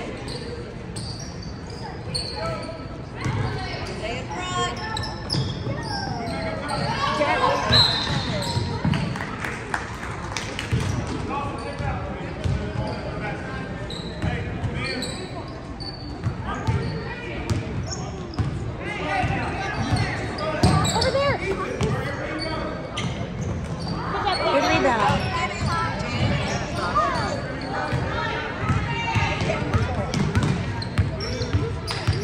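Basketball bouncing on a hardwood gym floor, repeated thuds echoing in a large hall, with voices calling out over the play.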